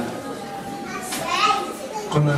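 Indistinct voices of people in the room, with a high-pitched voice rising briefly about a second in.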